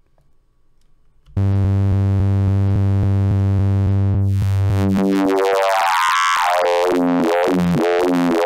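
Serum software synthesizer playing a custom math-generated wavetable: a low, buzzy tone dense with harmonics starts about a second and a half in. From about five seconds its tone sweeps and shifts in pitch as the wavetable position is moved. The wavetable has discontinuities at its cycle edges.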